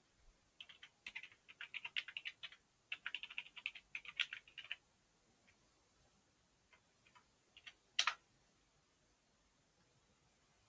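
Typing on a computer keyboard: a quick run of keystrokes lasting about four seconds, then a few single taps and one louder key press about eight seconds in.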